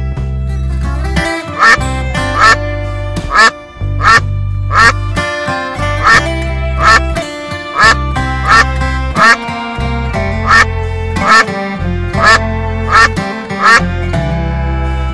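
Duck quacks repeated in time with guitar-led country-style backing music, about fifteen short, loud quacks at an even pace, starting a little over a second in.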